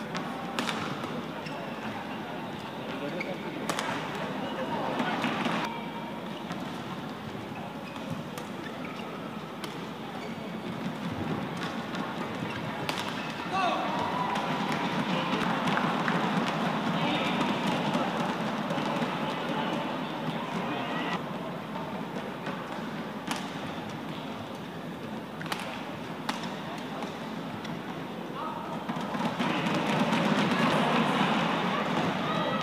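Badminton rallies: sharp racket strikes on the shuttlecock at irregular intervals over the steady noise of an arena crowd, which grows louder for several seconds about midway.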